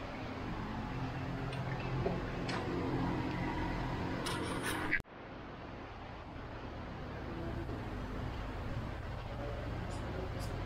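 Steady workshop background hum with a few light clinks. It cuts off suddenly about halfway and gives way to a quieter, duller hum.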